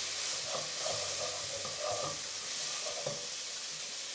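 Onion and tomato masala with ground spices sizzling in a frying pan, with a wooden spatula stirring and scraping through it.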